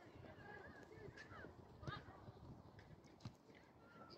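Faint outdoor ambience of a youth football game on grass: a few dull thuds of the ball being kicked, with distant children's calls.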